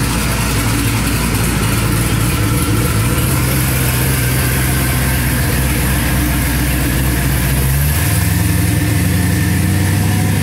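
Twin-turbo LS-based V8, a sleeved 5.3 truck engine, running at a steady idle on the dyno, its note shifting slightly about eight seconds in.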